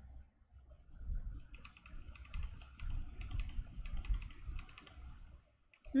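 Typing on a computer keyboard: a run of quick, irregular keystrokes with soft low knocks, stopping just before the end.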